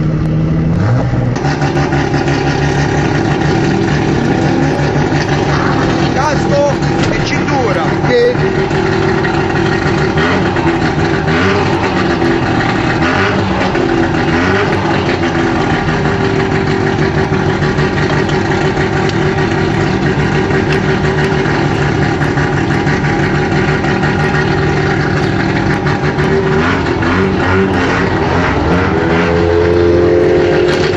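Audi TT's engine idling steadily, heard from inside its cabin; near the end the engine note rises.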